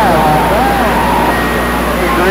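CB radio receiver on receive, putting out hiss and static over a steady hum, with a weak, distorted voice from a distant station fading in and out during the first second.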